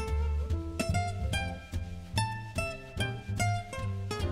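Archtop guitar playing a run of single plucked notes over low bass notes.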